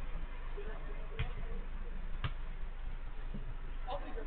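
Two sharp knocks of a football being kicked, about a second apart, over a steady low hum and faint distant voices of players.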